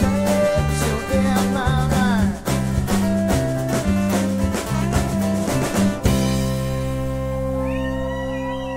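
Live rock band playing the closing bars of a song: bass and drums drive a steady beat under gliding lead-guitar lines. About six seconds in, the band hits and holds a final sustained chord, with guitar bends ringing over it as the song ends.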